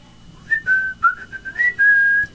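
A person whistling a short tune of a few notes, starting about half a second in and ending on a held note.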